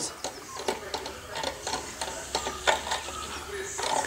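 Irregular light clicks and knocks of hands handling metal parts on top of a freshly painted Tobatta M90 walking-tractor engine.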